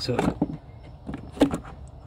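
Rubber air intake hose and its plastic fittings being handled and pushed into place: a few short rubs and knocks, the loudest about one and a half seconds in.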